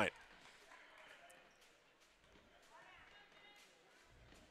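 Faint gymnasium ambience: low crowd murmur and distant voices, with a few faint thumps of a basketball bounced on the hardwood floor by the free-throw shooter.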